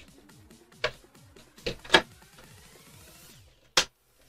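Stiff clear plastic tray insert of a card box being handled and pried loose: four short, sharp plastic clicks and snaps, the loudest about two seconds in and the last near the end, over faint background music.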